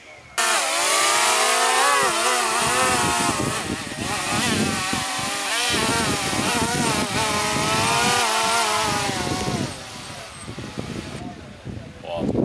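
Small quadcopter drone's motors and propellers buzzing close by, their pitch wavering up and down as the throttle changes. The buzz starts suddenly about half a second in and falls away about ten seconds in.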